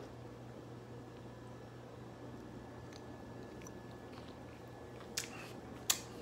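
Faint sipping and swallowing of beer from a glass over a low steady room hum, with two short sharp clicks near the end.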